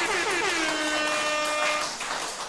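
A brassy musical sting: a few quick falling notes, then one long held note that fades near the end.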